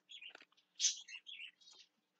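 A bird chirping faintly, a few short high-pitched chirps in a row.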